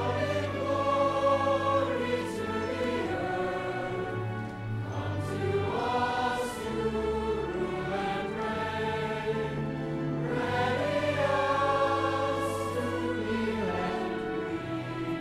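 Choir singing slow, long-held notes over a steady low accompaniment, swelling a little louder near the start and again near the end.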